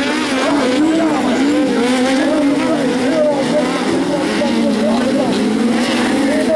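Engines of 1600cc Sprint-class autocross cars racing on a dirt track, their pitch wavering up and down continuously as the revs rise and fall.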